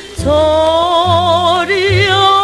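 A 1960s Korean pop song: a female vocalist starts a long held note with a wide vibrato just after a brief break, over a band accompaniment with bass.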